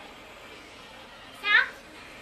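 A child's voice in one short high call about a second and a half in, over faint room noise.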